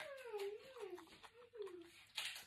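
A closed-lipped "mmm" hum from a woman chewing food, its pitch wavering up and down three or four times, with faint mouth clicks.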